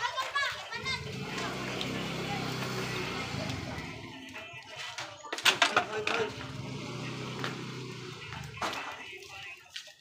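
Children and adults chattering, with a low steady hum in the first few seconds and a few sharp clacks a little past halfway.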